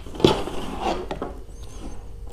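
Cable and plastic multi-pin connectors being handled: rubbing and rustling, with a sharp click about a quarter second in and a few lighter knocks after it.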